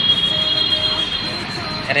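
A steady, high-pitched whine made of two close tones, over a background of noise.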